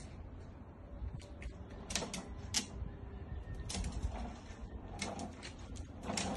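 Hard plastic wheels of a Little Tikes Cozy Coupe toy car rolling over rough concrete, with irregular clicks and rattles.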